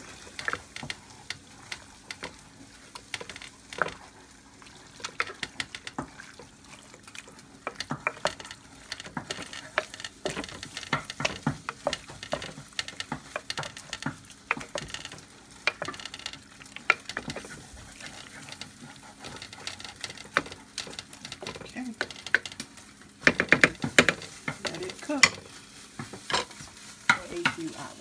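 A spoon stirring thick chili of ground turkey, beans and tomatoes in a slow cooker's black crock: irregular wet scrapes and knocks against the pot, busier and louder about three-quarters of the way through.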